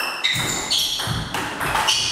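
Table tennis rally: the ball clicks on the bats and the table in quick succession, several hits a second, each with a short high ring.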